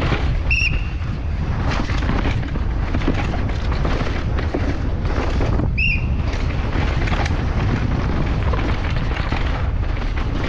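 Wind buffeting the microphone over the rumble and rattle of a Pivot Cycles downhill mountain bike at speed on rough dirt, with knocks from the tyres and suspension striking roots and rocks. A short high squeal sounds twice, about half a second in and near six seconds.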